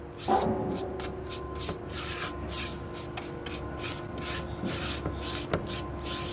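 An artist-type brush stroking dark seedlac shellac across the ribbed wooden slats of a tambour door: a soft, scratchy swish repeated with each stroke, a couple of times a second.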